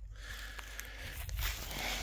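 Quiet footsteps and rustling through dry grass and weeds, with a few faint ticks over a low steady rumble.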